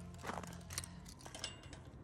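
Key working at a padlock on a chain-link gate latch: a few light metallic clicks and clinks. The lock is frozen and won't give.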